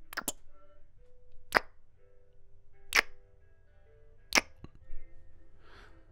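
Close-miked kissing: wet lip smacks, a quick double kiss at the start and then single kisses about every one and a half seconds, with a soft breath near the end, over quiet background music.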